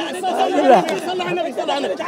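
Men's voices talking over one another in an outdoor crowd, too tangled for single words to stand out.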